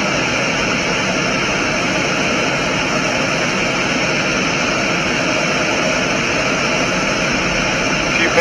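Five-segment solid rocket booster of NASA's Space Launch System firing in a horizontal static test, about half a minute into its burn. Its exhaust makes a loud, steady noise spread across all pitches, holding an even level throughout.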